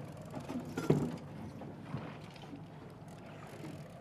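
Fishing reel being wound in on a hooked salmon, a faint mechanical ratcheting, with a brief louder knock about a second in.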